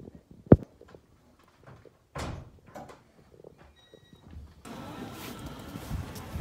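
Wooden lattice door of a hanok being handled: a sharp wooden knock about half a second in, then a short scraping rub of the door around two seconds. Near the end, steady outdoor street noise with distant voices takes over.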